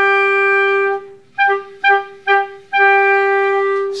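Two clarinets playing an orchestral excerpt together in unison: a long held note, three short detached notes, then another long held note.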